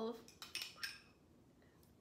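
A few light clinks of a small metal spoon against glass, in the first second: the spoon touching the rim of a mason jar and a small glass as food colouring is spooned in.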